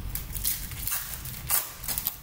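Foil trading-card pack wrappers crinkling as a pack is handled and torn open, in short crackly bursts, the loudest about one and a half seconds in.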